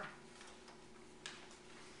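Near silence: room tone with a faint steady hum, and one faint brief tick a little past halfway through.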